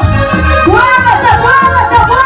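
Arranger keyboard playing an upbeat Latin-style instrumental passage: a lead melody that slides up and down in pitch, over a pulsing bass and drum rhythm.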